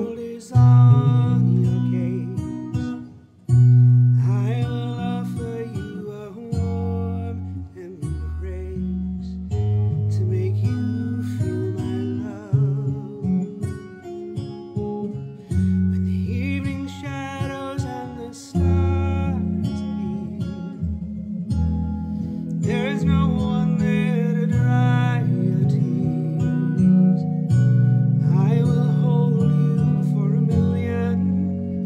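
A man singing a funky song, accompanied by a recorded backing track with acoustic guitar and held bass notes.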